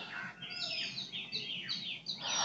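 Birds chirping: a quick run of short, high, falling notes, about five a second.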